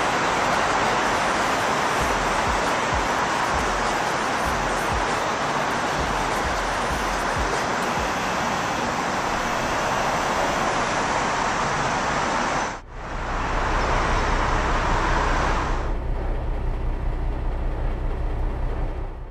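Steady rushing background noise, like traffic or air around a vehicle lot, with no clear engine note. It cuts out abruptly for a split second about thirteen seconds in, then comes back, and turns quieter with a low hum in the last two seconds.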